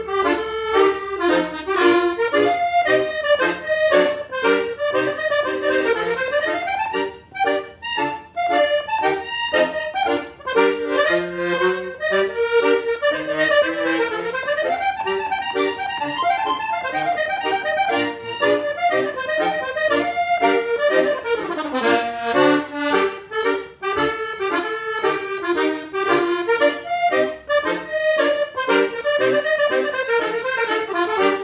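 Fantini piano accordion playing a fast traditional tune: a quick melody on the treble keys with rising and falling runs, over bass notes from the left-hand buttons.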